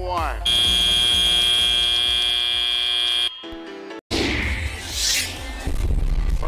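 FRC end-of-match buzzer: one loud, steady electronic buzz lasting about three seconds that cuts off abruptly, marking the end of the match. After a brief dropout a rushing noise follows.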